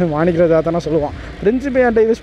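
Mostly a person talking, over a steady low rumble from a moving motorcycle and the wind.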